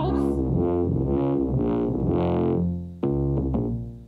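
Live electronic accompaniment of an opera playing an instrumental passage: sustained chords over low bass notes. A new chord sounds about three seconds in and fades away.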